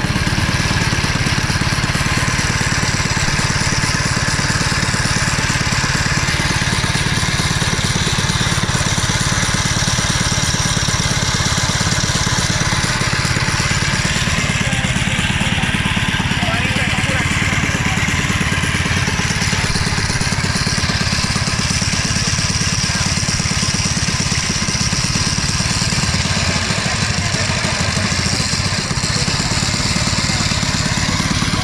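212cc single-cylinder four-stroke small engine on a long-tail kayak motor, running steadily and loudly.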